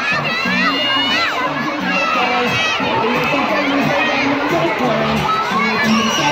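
A crowd of schoolchildren shouting and chattering over one another, with many high voices overlapping at a steady, loud level.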